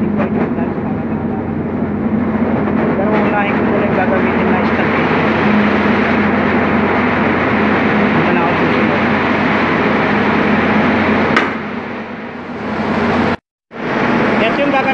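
Steady, loud drone of ship's engine-room machinery running, with a constant low hum. About eleven seconds in there is a click and the level drops, and the sound cuts out briefly just before the end.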